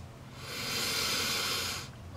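One long sniff through a man's nose, smelling a new toy figure held against it. The sniff starts about half a second in and lasts about a second and a half.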